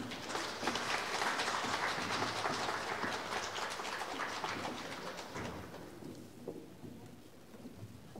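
Audience applauding, dying away about six seconds in.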